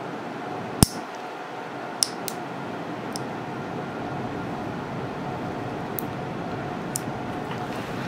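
Nail nippers snipping through the thick, curled edge of an ingrown toenail: one sharp click about a second in, then a few fainter clicks, over a steady room hum.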